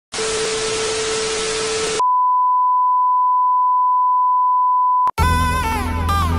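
TV static hiss with a faint steady tone in it for about two seconds, then a steady TV test-card beep tone for about three seconds. It cuts off abruptly, and electronic music with stepping, falling synth notes starts just before the end.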